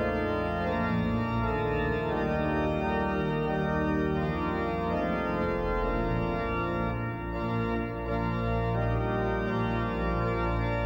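Pipe organ playing sustained full chords over a deep pedal bass. The sound thins briefly twice, about seven and eight seconds in, between chords.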